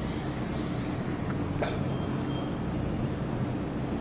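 Chalk drawing a long curved stroke on a chalkboard: a soft, even scratching over a low steady room hum, with a light tap about one and a half seconds in.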